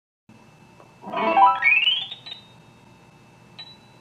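Audio signal of an EAV (electroacupuncture) testing device: a run of tones climbs quickly in pitch about a second in as the probe meets the hypothalamus point and the conductivity reading rises, then settles into a steady high tone as the reading holds.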